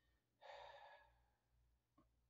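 A man sighing: one breathy exhale starting about half a second in and fading away within a second.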